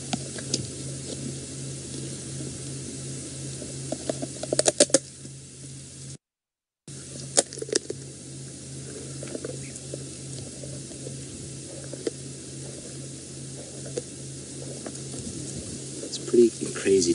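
Lioness crunching a tortoise's shell with her teeth: a crackling run of chewing with a burst of sharp cracks about four and a half seconds in and another crack a little after seven seconds. A steady low hum runs underneath.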